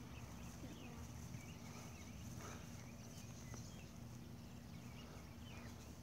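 Quiet outdoor ambience: a low, steady rumble with a faint continuous hum under it, and a few faint, short chirps scattered through.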